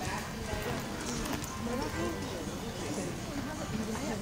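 Hoofbeats of a ridden quarter horse on the dirt footing of an arena as it passes close by and moves away, with people chattering in the background.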